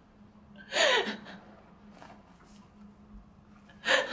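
A woman crying, with a loud gasping sob about a second in that falls in pitch, and another sharp sob near the end.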